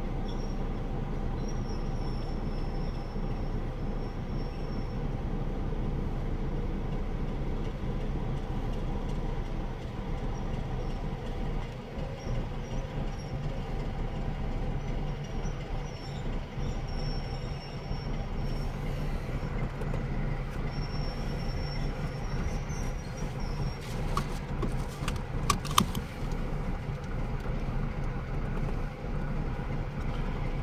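BR Class 33 diesel locomotive D6515 passing slowly over a level crossing, its engine a steady low hum, heard from inside a waiting car. A few sharp clicks come about three quarters of the way through.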